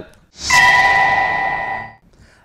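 Broadcast news transition sting: a whoosh opening into a bright bell-like chime that rings on for about a second and a half and fades out.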